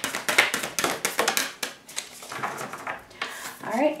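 A deck of oracle cards being shuffled by hand: a fast run of card clicks that thins out after about a second and a half into a few scattered taps.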